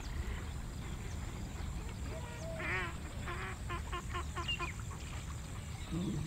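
An animal calling, a little over two seconds in: one drawn-out call, then a quick run of about six short calls, over a low steady rumble.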